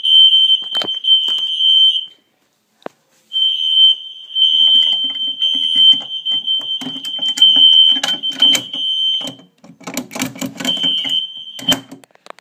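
Battery-powered fire alarm sounding a steady high-pitched tone that cuts out about two seconds in, comes back a second later, breaks off again after about nine seconds and returns briefly near the end. Clicks and knocks from the unit being handled run under it. The owner puts the alarm's behaviour down to low batteries.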